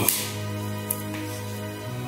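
Background music with long held notes.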